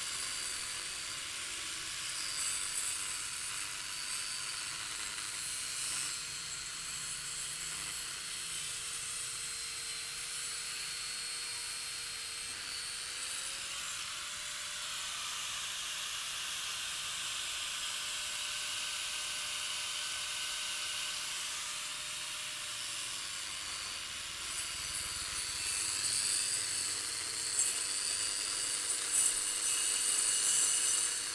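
Angle grinder with a 112 mm disc under a water-fed dust shroud, wet-cutting into brick: a steady hissing cut over the motor's whine. The whine dips and rises in pitch as the cutting load changes.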